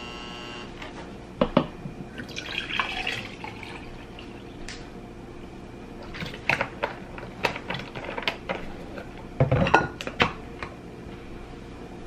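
Juice poured from a plastic jug into a plastic cup, with the clicks of the screw cap and small plastic knocks on the counter. The loudest knocks come about nine and a half to ten seconds in.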